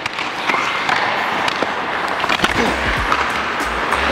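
Hockey practice on ice: skate blades scraping and sticks clicking and knocking against pucks, in sharp scattered clicks over a steady hiss. About halfway through, a music track with a low bass line comes in over it.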